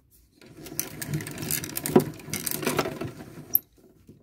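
Hand-cranked credit card shredder's cutters chewing through a plastic bank card: a dense crackling and grinding for about three seconds, ending in a sharp click.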